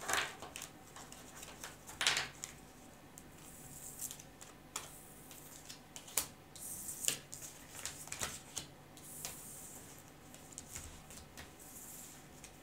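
Tarot cards being picked up off a hard tabletop and gathered into a pile: a string of light clicks, taps and brief sliding swishes of card stock, the loudest just after the start and about two, six and seven seconds in.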